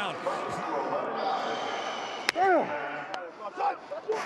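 Field ambience of an NFL game with indistinct background noise. Just past the middle there is a sharp smack, followed at once by a single shout from a man, and a second, lighter click comes about a second later.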